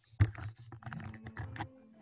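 A quick run of irregular clicks and taps over an open call microphone, with one sharp knock a fraction of a second in.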